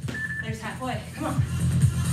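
Background electronic dance music with a steady kick drum at about two beats a second, a short high beep near the start, and a brief spoken word over it.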